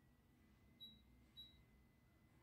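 Near silence broken by two faint, short, high-pitched electronic beeps about half a second apart, over a thin steady high whine.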